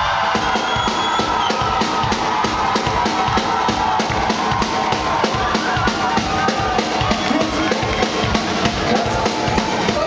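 Live rock band playing at full volume, a drum kit with kick and snare driving a steady beat under the rest of the band.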